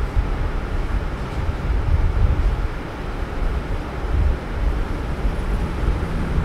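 A low background rumble that surges and eases unevenly, with no clear pitch or distinct knocks.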